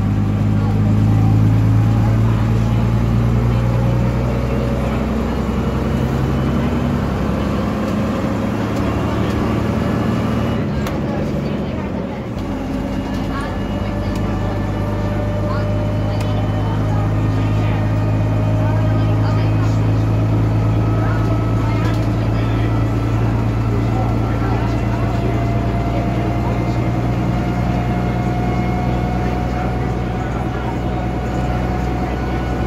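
Gardner six-cylinder diesel engine of a Bristol RE bus, heard from inside the saloon while the bus is under way. About eight seconds in the engine eases off for a few seconds, then pulls again, with a whine that climbs slowly as the bus gathers speed.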